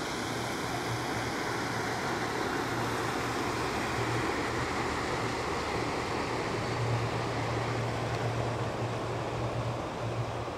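Steady low drone of a big pleasure boat's engine as it passes slowly, under an even rushing noise; the drone is strongest about seven seconds in.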